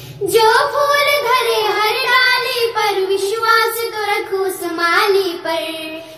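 Young female voices singing a Hindi Krishna bhajan without accompaniment: one long, ornamented held phrase whose pitch wavers up and down. It breaks off just before the end.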